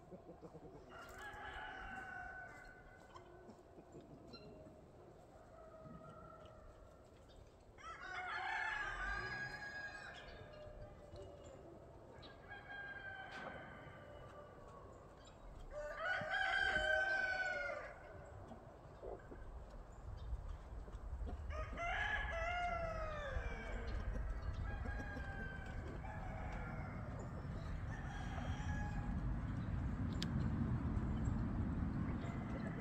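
Rooster crowing over and over: four strong crows, each about two seconds long and several seconds apart, the loudest one in the middle, with fainter calls in between. A low rumble builds in the second half.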